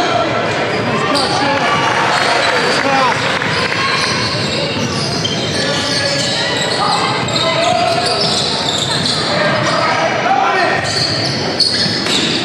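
Basketball game in a large gym: a ball bouncing on the hardwood court, with many voices shouting and talking from players and spectators, echoing in the hall.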